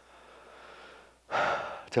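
A man's faint breathing, then a quick, loud intake of breath lasting about half a second, close on a headset microphone, just before he speaks again.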